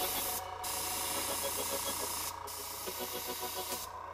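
Airbrush spraying paint with a steady hiss that stops briefly three times as the trigger is let off.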